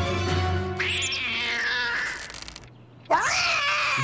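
A cartoon cat caterwauling: drawn-out yowls sliding down in pitch over background music, then after a brief hush a loud yowl that rises and falls, about three seconds in.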